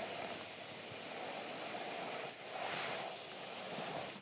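Steady rushing hiss from the camera's microphone being swept quickly through the air and handled, with a brief dip a little past halfway.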